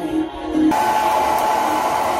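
Handheld hair dryer switched on about two-thirds of a second in, then running steadily with a constant whine over its airflow noise.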